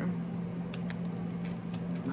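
Steady low hum in a small room, with a couple of faint light clicks about three quarters of a second in.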